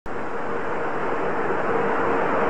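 Steady background hiss and hum of an old analog recording, with a faint steady tone running through it.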